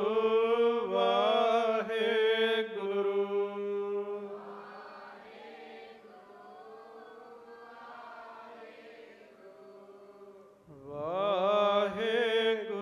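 Sikh devotional chanting over a steady sustained drone. A man's voice leads loudly in a slow, wavering melodic line, then drops away about four seconds in while softer group voices carry the chant for several seconds. The lead voice comes back loud near the end.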